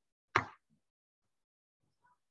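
A single short, sharp pop about a third of a second in, dying away within a fraction of a second, followed by a faint soft tick.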